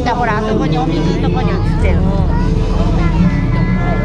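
Nearby voices of people talking, overlapping and some high-pitched, over a steady low rumble.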